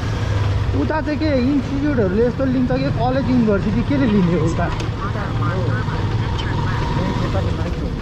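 Motorcycle running under way with wind on the microphone, a low steady rumble under a voice talking in the first half.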